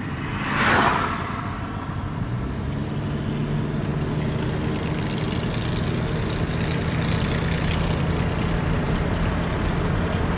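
Car interior road noise while driving: steady tyre and engine noise, with an oncoming car whooshing past in the first second. A steady low engine drone comes in about two seconds in and holds.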